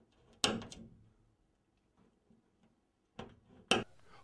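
Hand punch pressed through a paper template into ceiling drywall to mark screw holes: a sharp click about half a second in that trails off briefly, then two shorter clicks near the end.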